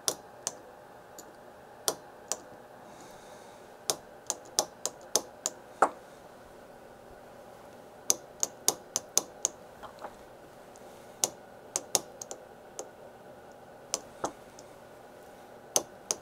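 Preset break-type SMA torque wrench clicking over again and again as it is worked on an SMA connector soldered to a circuit board's edge, sharp single clicks in uneven runs of a few per second with pauses between.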